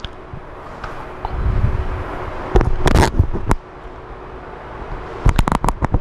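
Low rumbling with a few scattered knocks, then a quick run of clicks near the end.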